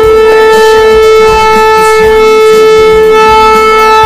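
A shofar (ram's horn) blown in one long, loud blast on a single steady note.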